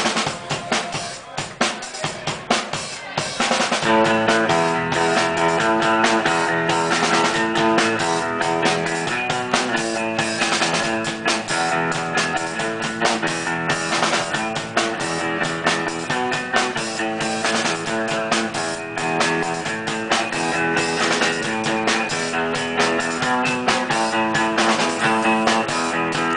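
A live band playing loud music. A drum kit plays alone at first, and about four seconds in guitars come in with held, ringing chords over the steady drum beat.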